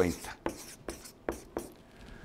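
Felt-tip marker writing on flip-chart paper, a run of short separate strokes.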